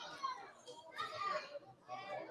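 Faint voices of children in a small audience, calling out and chattering in short bursts.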